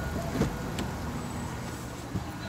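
A car's driver door opening, with a faint click about half a second in and rustling as someone gets into the seat, over a steady low rumble.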